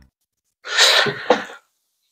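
A man's short, forceful burst of breath, about a second long, starting just over half a second in and ending in a sharp peak.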